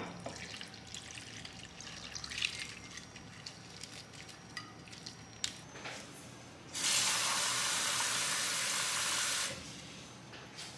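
Faint drips and small trickles of water settling over rice noodles soaking in a glass dish. About seven seconds in, a steady stream of running water starts, runs for about three seconds, and stops suddenly.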